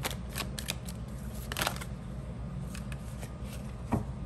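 A deck of tarot cards being shuffled by hand: a run of quick flicks and riffles in the first two seconds, with one longer rustle about a second and a half in, then sparser clicks, and a single knock right at the end.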